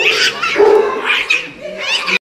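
A cat yowling loudly over and over while it is restrained for an injection: a distressed protest at being held down and injected. One call rises in pitch near the end.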